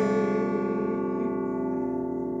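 A final strummed acoustic guitar chord ringing out and slowly fading, with no new strums.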